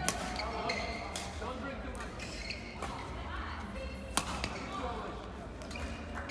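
Badminton rally in a sports hall: about four sharp racket-on-shuttlecock hits, a second or more apart, the loudest about four seconds in, with shoes squeaking briefly on the court mat between them.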